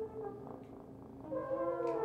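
Big band jazz recording: the brass section holds notes in close harmony, swelling into a louder chord about two-thirds of the way in.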